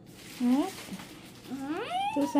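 A person's voice making two short wordless sounds that rise in pitch, the second a long upward glide near the end.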